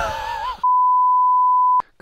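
A man laughing briefly, then a single steady high-pitched beep lasting just over a second, a censor bleep edited over the audio, ending with a small click.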